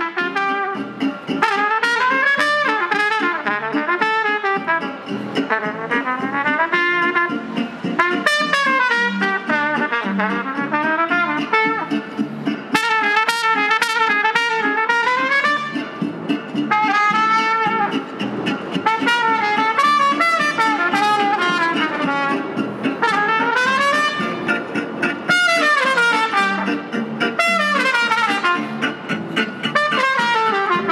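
A trumpet playing a continuous melody of quick runs that climb and fall in pitch.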